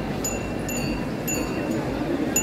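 Metallic chimes ring out a slow run of about four bright notes, roughly half a second apart, like a simple tune, over a steady background hum.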